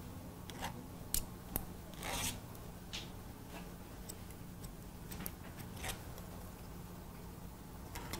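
Hair-cutting scissors snipping hair in single, irregularly spaced cuts, with one longer rasping stroke about two seconds in, over a low steady hum.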